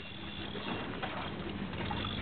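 A faint steady low hum over a soft wash of wind and water noise, aboard a small fishing boat.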